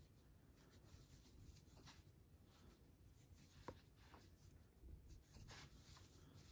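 Near silence: faint rustling of yarn and soft ticks of a crochet hook working single crochet stitches, with one sharper tick a little past halfway.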